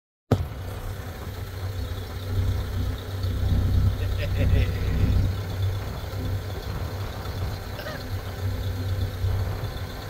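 Vintage car's engine running, a steady low rumble.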